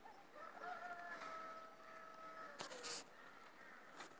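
A faint rooster crow: one long held note that drops in pitch at the end. It is followed by two sharp clicks just under three seconds in.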